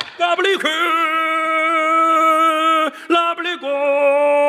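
A man singing a comic imitation of a bangzi opera tune: one long held note with a wobble at its start, breaking off near three seconds, then a second, lower held note near the end.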